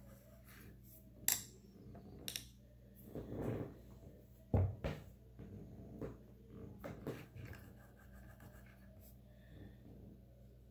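Scattered small clicks, taps and rubs from makeup tools and products being handled, the loudest a dull thump about halfway through, over a steady low hum.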